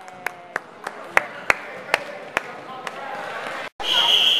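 Handclaps in a steady rhythm, about three a second at first and then spacing out, ringing in a large gymnasium, while a voice calls out a held, slowly falling note near the start. The sound cuts out shortly before the end.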